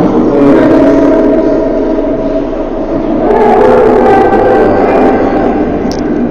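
Background music with sustained notes, the chord changing about three seconds in.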